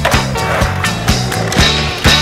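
Skateboard sounds over a music track: the board rolling on pavement, with several sharp clacks of the board during a trick.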